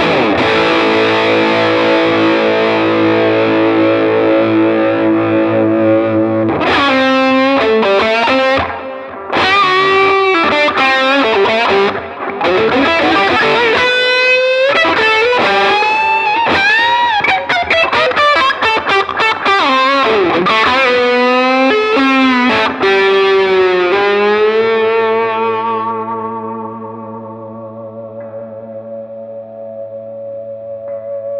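Electric guitar (a Les Paul) played through an overdrive pedal and a little delay into a Gibson Falcon 20 tube combo amp on full power: a held overdriven chord rings for about six seconds, then lead lines with string bends and vibrato, ending on a chord left ringing and slowly fading.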